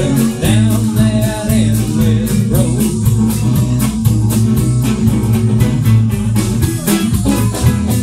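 Live band music with a steady beat: resonator guitar over upright bass, drums and keyboard.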